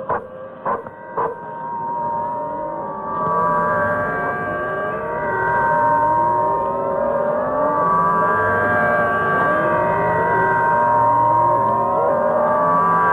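Electronic soundtrack of sustained high tones overlaid with many repeated rising sweeps, opening with three short sharp clicks in the first second and a half and growing louder from about three seconds in.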